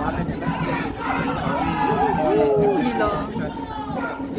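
Several people talking and calling out over one another, loudest in the middle, over a steady low hum.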